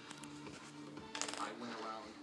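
Background music with steady, held low notes, and a brief voice in the second half.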